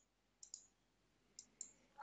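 Faint computer mouse clicks in near silence: two close together about half a second in, and two more about a second later, as Copy is picked from a right-click menu and the pointer clicks into a text editor.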